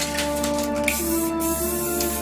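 Aerosol spray-paint can hissing as paint is sprayed onto paper, stronger in the second half, over background music with held notes.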